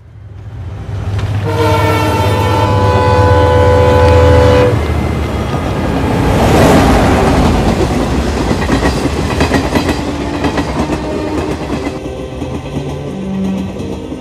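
A train horn blows one long steady blast of about three seconds, then a train passes close by, its wheels and carriages making a loud, steady rumbling noise that swells a few seconds later.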